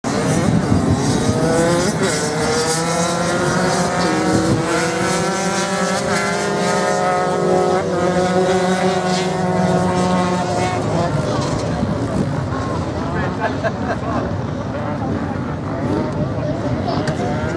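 Several dirt bike engines revving hard as the bikes race past on sand, their pitches rising and falling over one another. The engines thin out after about eleven seconds, and a person laughs near the end.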